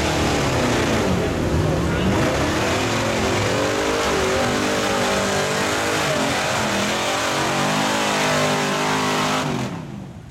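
Lifted Chevrolet pickup truck's engine revving hard while the truck churns through deep mud, its pitch rising and falling over and over. The sound drops to a much quieter level just before the end.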